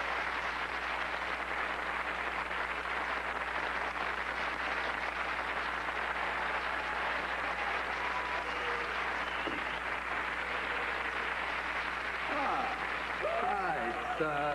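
Studio audience applauding steadily, with a low steady hum underneath. A voice starts near the end.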